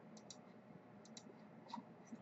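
Faint computer mouse clicks in near silence: a few short clicks, mostly in close pairs, spread across the two seconds.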